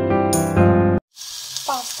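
Background music that cuts off abruptly about halfway through, followed by chicken pieces sizzling as they fry in a nonstick pan.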